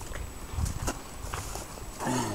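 Footsteps on grassy ground with uneven low rumble and a few light knocks near the middle.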